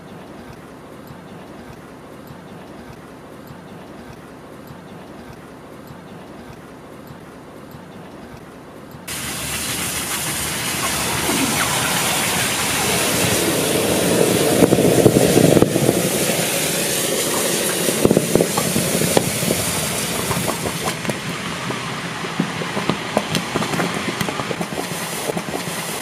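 Water boiling violently and hissing into steam around red-hot molten lava submerged in a pool, breaking out suddenly about nine seconds in and staying loud, with constant crackling and popping; before that only a low, quiet background.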